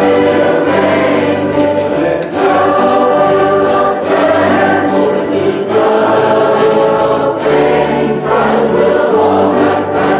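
Youth group singing a gospel hymn together as a choir, held notes in phrases that change every couple of seconds.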